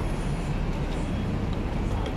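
Busy city street ambience: a steady low rumble of road traffic with the general noise of a crowded sidewalk.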